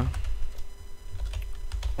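Typing on a computer keyboard: irregular keystroke clicks over a low background hum.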